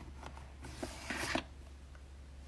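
A small cardboard drawer sliding open, a faint rubbing scrape that is clearest about a second in.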